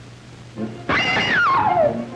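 Soundtrack music with a loud comic sound effect about a second in: a pitched glide with several overtones that falls steadily over about a second.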